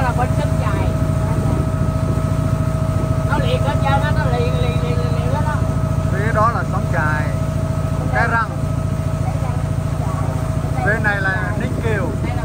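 A small river boat's engine running steadily, a constant drone with a steady whine on top, with voices talking over it at times.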